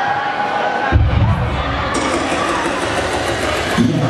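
Large audience cheering and screaming. About a second in, dance music with a heavy bass beat starts, and the cheering continues over it.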